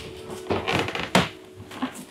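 Footsteps on a steep wooden staircase: a few irregular knocks, the sharpest a little past halfway.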